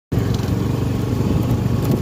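A small engine running steadily at an even speed, a low, constant hum that starts just as the sound begins.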